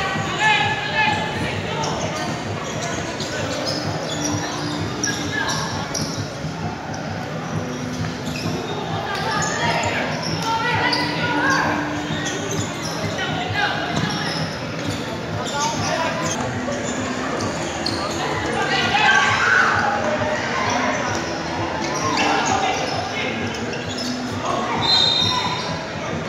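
Echoing ambience of a futsal match in an indoor hall: players and spectators calling and shouting, with the ball being kicked and bouncing on the court floor.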